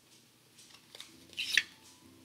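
Tarot cards being handled: small ticks, then a short sliding rasp about one and a half seconds in as a card is drawn from the deck.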